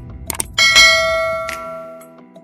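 A bell-like chime in a Kannada janapada DJ song, struck about half a second in after two sharp percussion clicks, then left ringing as it slowly fades. The low beat drops out under it.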